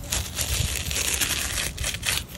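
Iguana tail hide being pulled off the meat with pliers: a continuous crackling, tearing sound as the skin peels away from the muscle, easing briefly near the end.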